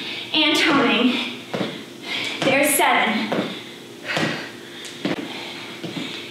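A woman's voice in short bursts between breaths during hard exercise, with a few sharp thuds of feet landing on a tiled floor as she hops side to side doing skaters.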